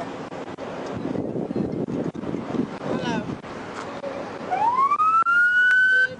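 Wind on the microphone with faint voices, then about four and a half seconds in an emergency-vehicle siren winds up in pitch and holds a steady high note, the loudest sound, before cutting off suddenly at the end.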